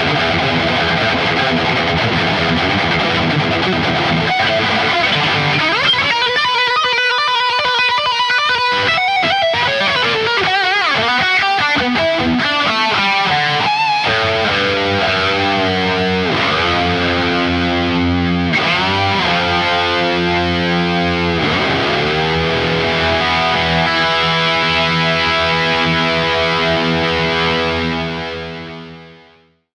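Distorted electric guitar solo through effects. It starts with quick runs, then long held notes with vibrato. In the middle the pitch swoops down and back up several times, and near the end it settles on a long ringing held chord.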